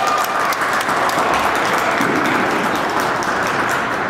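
Audience applauding: many hands clapping in a dense, steady patter that eases a little near the end.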